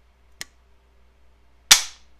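An AR-15 lower fitted with a Rise Armament Rave 140 drop-in trigger being dry-fired: a faint click about half a second in, then a loud, sharp snap near the end as the trigger breaks and the hammer falls. The break comes with no take-up.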